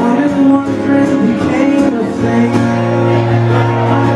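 Two acoustic guitars played together live, an instrumental passage of a folk song. A low note rings on from about halfway through.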